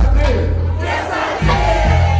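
Hip-hop track pumping through a club PA with heavy bass, a crowd shouting along over it. The bass drops out for a moment just past halfway and comes back in.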